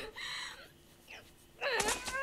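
A character's voice moaning, from the episode's soundtrack. It is faint at first, goes nearly quiet, then comes back louder about one and a half seconds in with a falling pitch.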